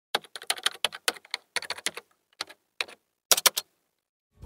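Computer keyboard typing sound effect: rapid, uneven key clicks for about three seconds, with three louder clicks close together near the end.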